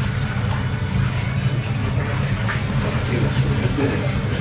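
Eatery ambience: a steady low hum with faint voices in the background, clearer near the end.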